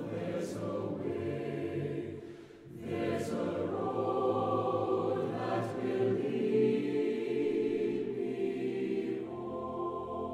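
Choir singing a slow piece in long held phrases, with a short break between phrases about two and a half seconds in.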